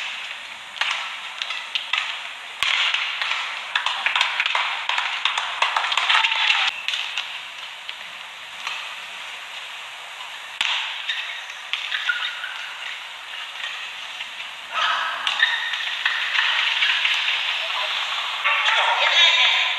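Badminton rally in an arena: sharp racket strikes on the shuttlecock and shoe squeaks on the court over a steady crowd murmur, the hits stopping about six or seven seconds in when the point ends. The crowd noise swells again near the end.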